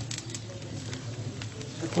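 Pork skin crackling over a very hot barbecue fire as it blisters into pururuca: a sizzling hiss broken by irregular sharp pops.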